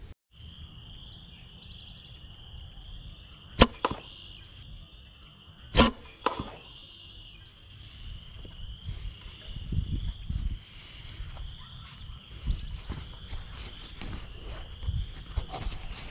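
Arrow shots from a bow at a hanging tennis-ball target: two sharp cracks about two seconds apart, the second followed by a smaller knock. A steady high thin tone runs underneath.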